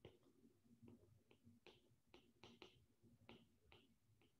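Near silence, broken by about ten faint, irregular clicks of a stylus tip tapping on a tablet's glass screen during handwriting.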